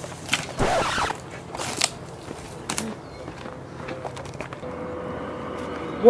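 Leafy tree branches being carried and dragged over dry dirt: leaves rustling and wood scraping, with a few sharp knocks. The loudest burst of rustling comes about a second in.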